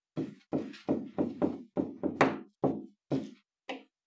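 Stylus knocking on a writing surface during handwriting: about eleven short, irregular knocks, roughly three a second, stopping shortly before the end.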